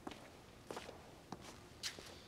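Faint footsteps of people walking across a hard floor, about one step every half second.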